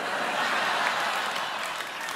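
Studio audience applauding, swelling about half a second in and easing off toward the end.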